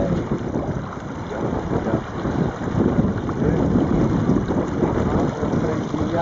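Wind buffeting the microphone aboard a small sailboat under way, with water washing along the hull; the noise is uneven and sits mostly low.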